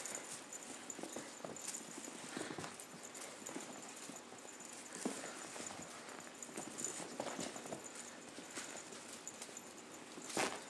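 Kittens' paws scampering and thumping on carpet as they pounce at a swishing feather wand toy, a string of irregular soft knocks and scuffs.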